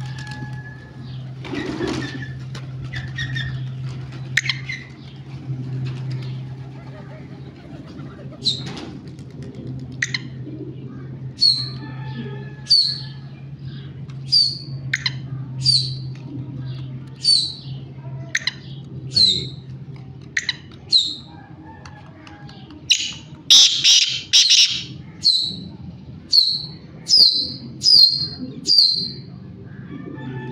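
Black francolin (kala titar) calling: a run of short, sharp, high calls about one a second from roughly ten seconds in, with a louder cluster of calls a little past the middle. A steady low hum runs under the first two-thirds.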